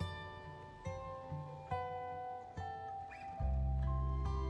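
Acoustic guitar music: single plucked notes in a slow, gentle line, with a deep low note swelling in near the end.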